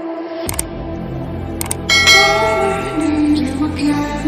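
Subscribe-button animation sound effects: two sharp clicks, then a bright bell chime about two seconds in that rings and fades away, over background music.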